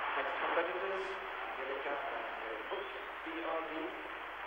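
A man's voice speaking, with the thin sound of old band-limited broadcast audio.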